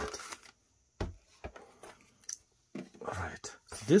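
Paper booklet and cardboard record box being handled: a single soft knock about a second in, then a few faint taps and rustles.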